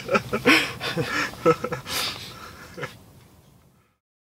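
Two men laughing in bursts that die away about three seconds in, leaving silence.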